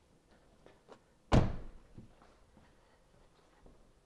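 A car door shut with a single solid thud about a second in, followed by a few faint light knocks.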